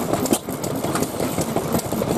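Old stationary kerosene engines running: a steady mechanical clatter with sharp, irregular ticks.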